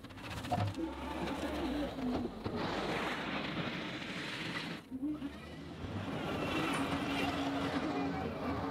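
A John Deere 325G compact track loader working at a distance, its diesel engine running steadily with a pitch that wavers up and down as it moves and works the bucket.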